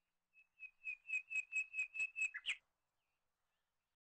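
A quick run of about ten short, high whistled notes, about four a second, ending with a brief dip and an upward sweep.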